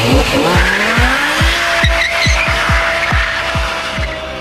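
A car engine revs up and then holds at high revs while the tyres squeal in a smoky burnout. It plays over music with a fast, steady kick-drum beat.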